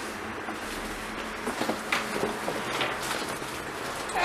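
Steady low room hiss with a few faint, soft knocks and rustles of handling.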